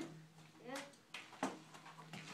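Quiet room tone with a low steady hum, broken by three or four light knocks in the middle and a brief voice sound.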